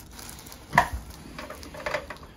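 A single sharp pop about a second in as a chiropractor's manual adjustment releases the patient's cervical spine joints (joint cavitation during a neck adjustment), with a fainter click near the end.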